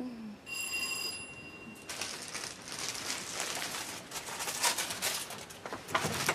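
A brief ringing tone, then gusting wind with a crackly, rattling noise running through it.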